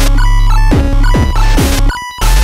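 Loud electronic chip-music dubstep: a heavy sustained bass under beeping square-wave notes, kick drums whose pitch drops sharply on each hit, and bursts of noise. The music drops out briefly at the very end.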